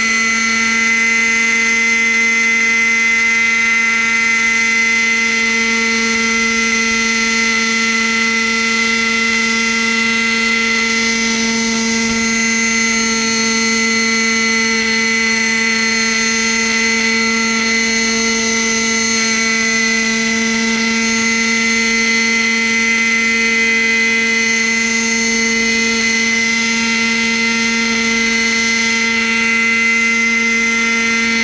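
Thunder Tiger Raptor 30 RC helicopter's small two-stroke glow-fuel engine and rotor running as it hovers low over the ground: a loud, steady whine that holds one pitch.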